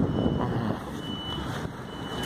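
A motor vehicle's engine running close by, with a high electronic beep that sounds on and off, clearest about a second in, like a reversing warning beeper.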